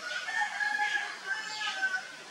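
Two drawn-out animal calls in a row, each held at a steady pitch, the second slightly lower than the first.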